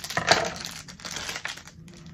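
Foil blind-bag wrapper crinkling as it is snipped open with scissors and pulled apart, loudest in a burst about a third of a second in, then softer rustling.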